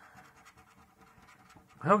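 Rapid, quick strokes of a paper lottery scratchcard being scratched, the coating scraped off its play area. A man starts speaking near the end.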